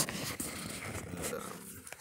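Scraping and rustling handling noise as hands and cables move about inside an open desktop computer case, starting with a short sharp click.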